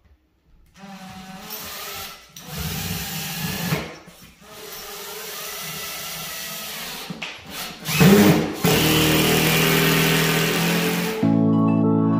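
Cordless drill/driver driving screws down into a creaking floor along the wall, running in several spurts with short pauses between them. Music comes in near the end.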